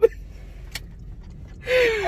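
Low steady rumble inside a car cabin, with a single sharp click a little under a second in.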